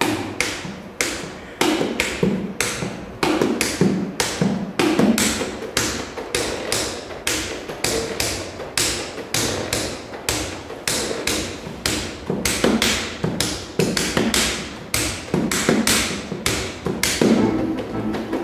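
Rhythmic percussive tapping and slapping by hand on the body of a bayan (button accordion): quick, uneven strokes in a tango rhythm, about three a second.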